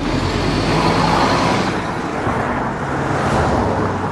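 Street traffic noise: vehicles driving past with a steady rush of road noise that swells twice.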